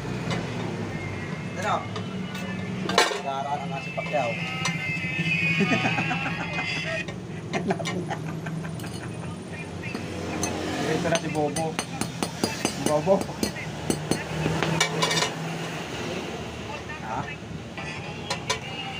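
A ball-peen hammer taps a bent steel ABS sensor disc (tone ring) from a Yamaha NMAX against a flat steel block to straighten it. The disc clinks as it is laid on and pressed against a sheet of glass to check that it is flat. Voices and a steady low hum sit in the background.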